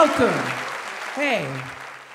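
Audience applause dying down, with two short vocal sounds from a man over it, one at the start and one just past the middle.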